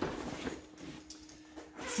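Hands rubbing and shifting a nylon carry bag, with faint rustling and scuffing of the fabric.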